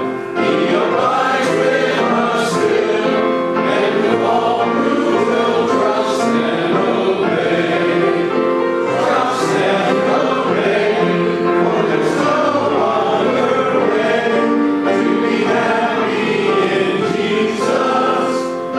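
A church congregation singing a hymn together, a man's voice leading at the microphone.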